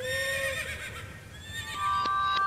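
Edited sound effects and music: a held tone that breaks off about half a second in, a wavering high warble, then steady sustained tones starting near the end.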